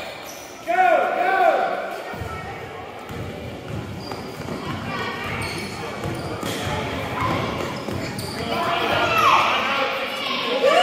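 Basketball being dribbled on a hardwood gym floor during play, with short sneaker squeaks about a second in and near the end, under spectators' voices in a large gym.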